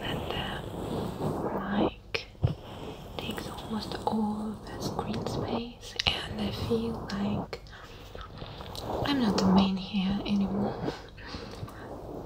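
A woman speaking softly, half-whispered, close to the microphone, with small clicks between phrases.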